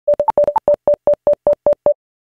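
Electronic beeping sound effect: a fast train of short, loud beeps at one mid pitch, about five a second, with two higher beeps in the first half-second.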